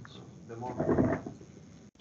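Faint, muffled speech over a video call, too low for the words to be made out, with a brief audio dropout near the end.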